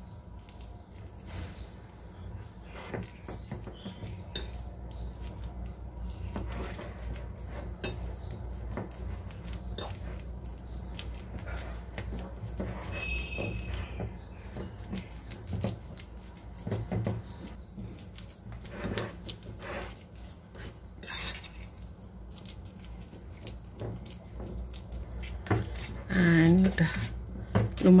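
A metal fork mashing soft banana in a ceramic bowl, its tines clinking and scraping against the bowl at an irregular pace.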